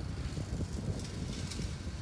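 Steady low background rumble, with a few faint high ticks about a second in.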